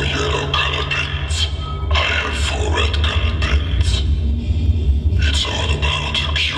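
Live band playing amplified through a small club's PA: loud, with a heavy steady bass drone under irregular drum and cymbal hits, thinning briefly about four seconds in.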